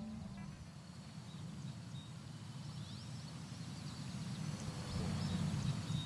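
Faint outdoor field ambience: a steady low rumble with a few thin, high bird chirps scattered through it. The tail of the guitar music fades out at the very start.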